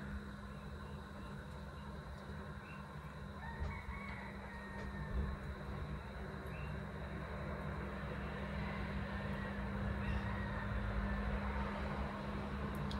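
Faint background sound: a steady low hum, with a distant rooster crowing now and then and road noise slowly swelling near the end.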